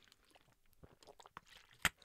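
Faint wet mouth sounds of a person taking a drink close to a microphone: soft gulps and clicks in the second half. A single short, sharp lip smack just before the end is the loudest sound, "like a little kiss".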